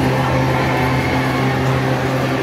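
Steady low mechanical hum of the venue, unchanging, under a general murmur of the spectators around the mat.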